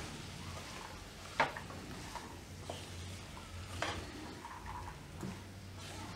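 Silicone spatula stirring chopped green beans frying with spices in a nonstick pan, the beans scraping and shuffling against the pan. A sharp knock of the spatula on the pan comes about a second and a half in, another just before four seconds, and a few softer taps later.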